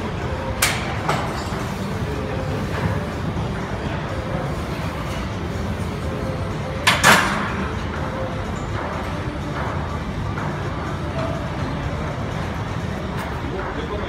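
Gym ambience: a steady background din with music and voices, broken by sharp clanks of gym equipment, the loudest a double clank about seven seconds in and a smaller one just after the start.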